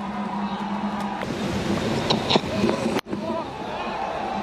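Stadium crowd noise at a cricket ground, a steady din over a low hum, broken by a sudden short dropout about three seconds in.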